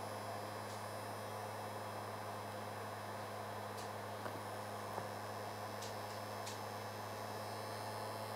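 Heat gun running on a low setting: a steady hum with an even airy hiss. A few faint light ticks through the middle.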